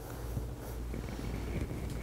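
Low steady rumble of background room noise with a few faint ticks, no speech.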